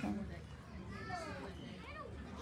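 Children's voices chattering in the background, without clear words.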